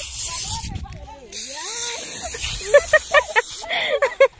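Aerosol can of Holi snow foam spraying, a hiss that comes in several bursts, with voices in the background.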